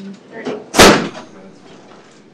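A single loud bang, sharp and brief, about a second in.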